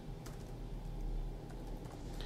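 Laptop keyboard keys tapped faintly as a string of digits is typed.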